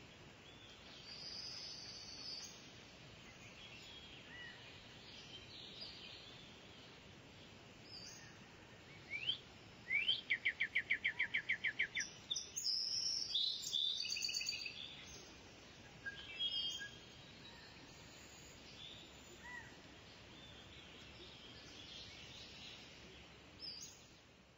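Faint birdsong: scattered chirps from several birds, with a rapid trill of about a dozen quick notes around the middle.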